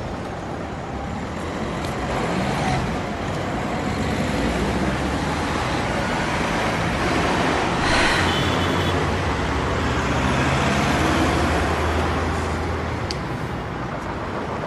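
Road traffic noise at a roadside: vehicles running past, with a steady low engine hum that grows stronger past the middle and a brief hiss about eight seconds in.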